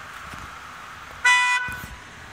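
A car horn gives one short honk, about a third of a second long, a little over a second in, over steady background noise.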